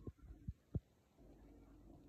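Three soft low thumps in the first second, then a faint low hum.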